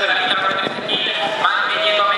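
An excited human voice calling out loudly, high and strained, with other voices overlapping it.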